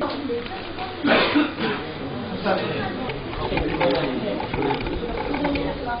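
Several people talking at once in casual chatter, with a short louder outburst about a second in.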